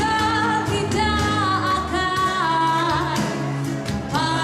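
Live band playing a Malay pop ballad, electric and acoustic guitars with bass guitar, as a female vocalist sings long held notes that bend and step between pitches without words.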